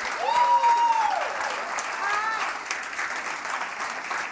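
Congregation applauding after a spoken testimony, with a voice calling out one long held cheer near the start and a shorter call about two seconds in.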